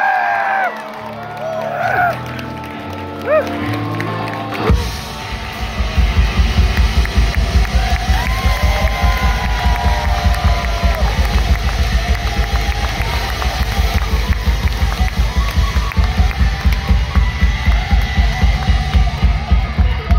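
Live rock band on stage: a few whoops and crowd shouts over held instrument sounds, then a bit under five seconds in the full band comes in loud with a fast, steady pounding kick drum and dense distorted guitars and bass.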